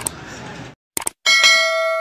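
Subscribe-button animation sound effect: two quick mouse clicks about a second in, then a notification bell chime that rings on steadily. Before it there is faint room noise that cuts off.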